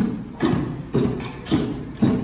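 Hand drums struck by children in a steady beat, about two hits a second.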